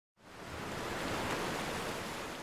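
Soft, steady rush of ocean surf that fades in after a brief silence.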